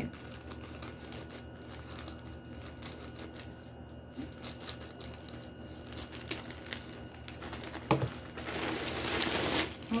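Scissors cutting through a plastic courier mailer bag, with scattered small snips and rustles. Near the end comes a louder stretch of plastic crinkling as a plastic-wrapped parcel is pulled out of the bag.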